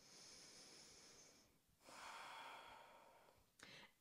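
Faint, slow breathing by a person holding a yoga pose: two long, soft breaths, the second starting about two seconds in, then a short quick breath near the end.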